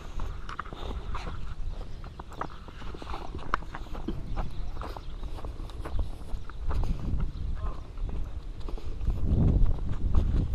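Footsteps of a person and two dogs crunching through fresh snow at a walking pace, with irregular small crunches and clicks. A low rumble on the microphone grows louder near the end.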